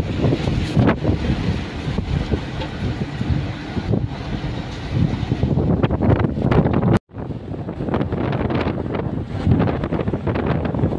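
Road and wind noise inside a moving car, with wind buffeting the microphone in gusts. The sound cuts out for an instant about seven seconds in.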